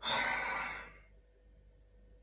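A man's sigh: one breathy exhale that starts abruptly and fades out after about a second.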